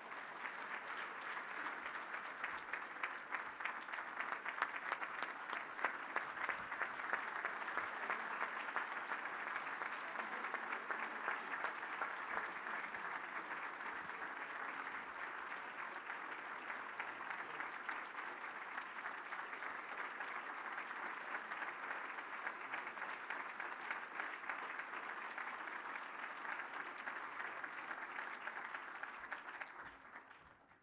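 Audience applauding: dense, steady clapping from many hands, holding at an even level throughout.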